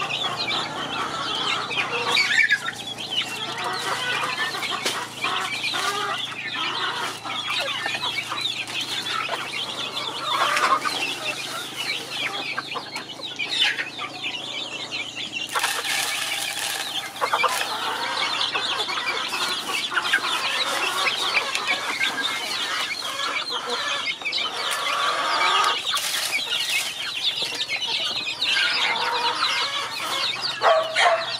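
A flock of young chicks peeping constantly. About halfway through comes a brief rush of maize grain poured into their feeder.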